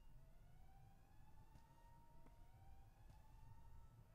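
Near silence, with a very faint tone that rises and levels off over and over, about once a second.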